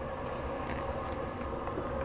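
Steady low background hum with no distinct event in it: room noise.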